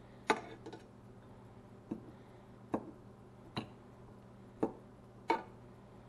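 A metal fork clicking against a nonstick frying pan while turning pieces of fish, six sharp taps at uneven intervals of about a second, over a faint steady hum.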